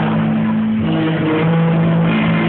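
Live rock band playing an instrumental stretch, with electric guitar and bass holding steady low notes over drums, amplified through a PA.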